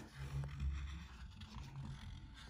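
Faint scratching of a dry-erase marker tip rubbing over a glass plate as a drawn circle is traced over, with a low hum underneath.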